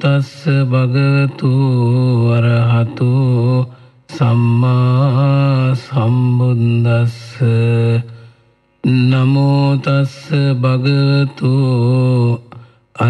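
A man chanting in Pali in the slow, melodic style of Sri Lankan Buddhist recitation: long, held phrases with a wavering pitch, broken by two short pauses.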